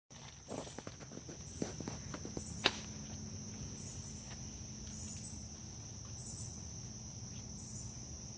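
Insects calling steadily in a high-pitched drone, with a second, higher call pulsing about once a second. Footsteps and a few clicks sound in the first three seconds, the sharpest click about 2.7 s in.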